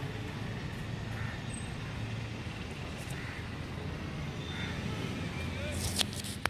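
Room ambience in a crowded exam hall: indistinct voices over a steady low hum.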